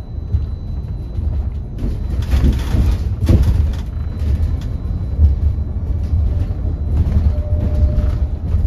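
Cabin ride noise on the upper deck of a Wright StreetDeck Electroliner battery-electric double-decker bus in motion: a steady low rumble of road and body noise, with a few brief knocks and rattles a couple of seconds in.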